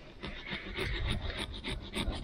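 Small serrated pumpkin-carving saw sawing through the rind and flesh of a pumpkin to cut its lid: quick rasping back-and-forth strokes, several a second, getting louder after about half a second.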